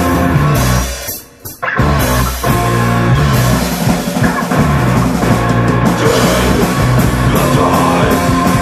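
Raw hardcore punk recording with distorted guitar, bass and pounding drums. About a second in, the band cuts out almost to silence for under a second, then crashes back in and drives on at full tilt.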